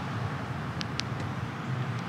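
Steady road-traffic noise, a low rumble with hiss. Two brief high chirps come close together about a second in.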